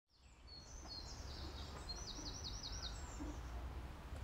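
Outdoor ambience fading in: birds singing high chirps, with a quick run of five down-slurred notes a couple of seconds in, over a steady low rumble.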